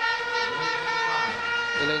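A steady drone of several held tones that does not change, with a commentator's voice starting near the end.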